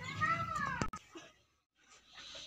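A cat meowing once, a single call that rises and falls in pitch. It cuts off abruptly about a second in, leaving near silence.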